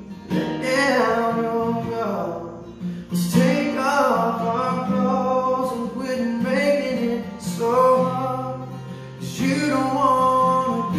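A man singing a slow song in phrases over his own strummed acoustic guitar.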